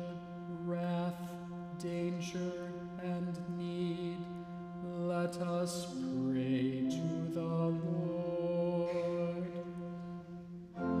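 A man chanting a litany petition on one reciting tone over a held low organ note, moving into a short sung melodic turn about six seconds in.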